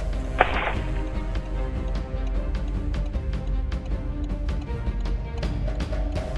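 Background music with a steady bass line, and a short, sharp hit about half a second in.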